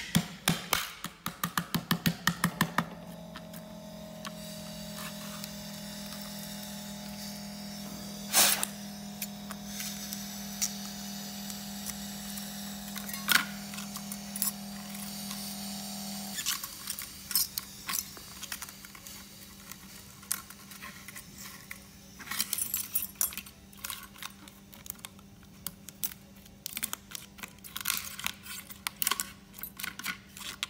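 A liquid-nitrogen screen-separator freezer runs with a steady low hum that cuts off suddenly about sixteen seconds in; it switches itself off on reaching its set temperature. It opens with a quick run of clicks, and later there are irregular crackling clicks as frozen cracked glass is pried and peeled off a phone screen.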